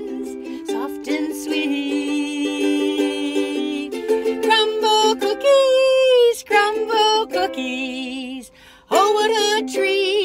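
A woman singing to her own strummed ukulele, holding long notes with some sliding and a wavering vibrato, heard inside a car.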